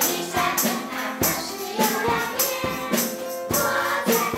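An upbeat Christian praise song: group singing with children's voices over backing music with a steady percussive beat.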